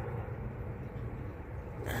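Steady low rumble of background noise with no distinct sound standing out.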